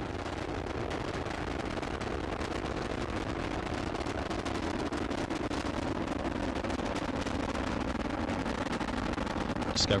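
Space Shuttle Discovery's launch roar during ascent: a steady, crackling rumble from its twin solid rocket boosters and three main engines.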